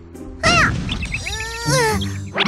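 A cartoon sound effect over background music: a short noisy whoosh with a quick rising-and-falling call about half a second in, then a drawn-out wordless voice sound that rises slightly near the end.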